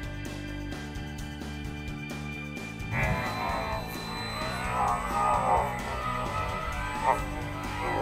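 Background guitar music throughout. From about three seconds in, the running noise of the Axial Exo Terra RC buggy driving over dirt joins the music, with a sharp knock about seven seconds in.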